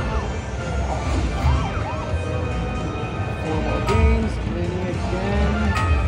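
Video slot machine playing its free-spins bonus: jingling game music with rising-and-falling chime tones, and two sharp clicks about four seconds in and at the end.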